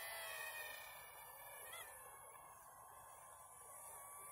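Faint, thin whine of a small toy quadcopter's motors, the Sharper Image LED stunt drone flying at a distance. Its pitch wavers slightly, and a steadier tone comes in near the end.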